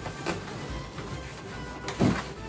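Background music, with latex balloons rubbing and squeaking as they are handled. There is a short rub about a third of a second in and a louder one right at the end.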